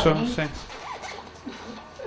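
The last syllable of speech, then a short pause filled with a faint scratchy rustling noise in the room.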